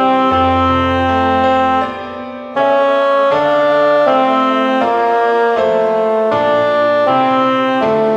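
Part-practice track of a four-part choral anthem: the tenor line played in a reedy, wind-instrument tone over piano accompaniment, in held, smoothly joined notes. The line breaks off briefly about two seconds in.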